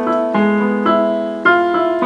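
Chords played on a digital keyboard, each held and then replaced by a new chord about every half second.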